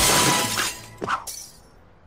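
Cartoon sound effect of glass shattering: a sudden loud crash that dies away within about a second, followed by a short, fainter sound about a second in.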